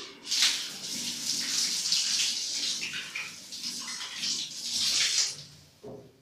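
Water running from a bathroom tap while hands are washed under it, the flow sound shifting unevenly as the hands move in the stream. The water starts about a third of a second in and stops shortly before the end.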